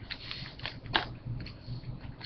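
Hard plastic trading-card cases being handled and shuffled: a few short clicks and crackly rustles, the sharpest about a second in.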